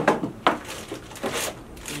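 Handling noise from unpacking: plastic packaging crinkling and parts knocking inside a cardboard box, with two sharp knocks in the first half second and short bursts of rustling after.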